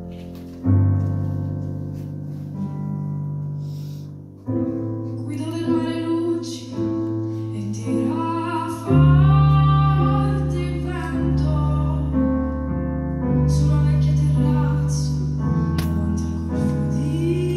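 A woman singing into a microphone over an instrumental accompaniment. The accompaniment's long held low notes play alone at first, and her voice comes in about four and a half seconds in.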